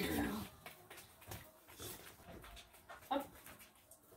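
A dog panting in short, uneven breaths between a woman's spoken praise and commands.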